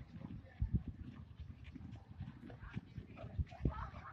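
Low, dull thumps several times, over faint distant voices.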